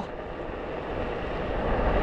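Steady rumbling noise of riding a Onewheel along asphalt: the tyre rolling on the road and wind on the microphone, slowly getting louder.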